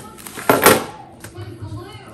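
A brief rustle of packaging about half a second in, as tissue paper and a cloth dust pouch are handled, followed by softer handling sounds.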